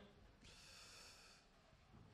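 Near silence, with a faint soft hiss for about a second near the middle.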